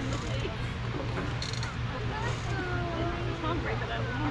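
Indistinct voices of players and spectators calling out across a youth baseball field, over a steady low hum.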